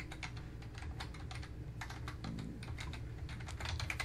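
Computer keyboard being typed on: quick, irregular key clicks in short runs.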